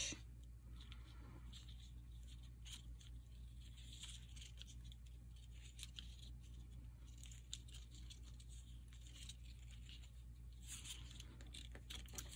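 Very faint rustling and ticking of paper and thread being handled by hand while a button is sewn on, over a low steady hum; the rustling is a little louder near the end.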